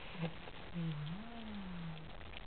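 A 24-day-old Italian Greyhound puppy growling low while eating, the sound starting about a second in and rising, then falling, in pitch.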